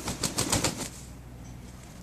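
Rooster flapping its wings hard: a rapid run of wingbeats for about a second that stops abruptly.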